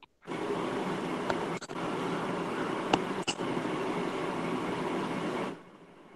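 Steady background noise from an open microphone on a video call: an even hiss with a low hum and a few faint clicks, starting suddenly and cutting off abruptly near the end.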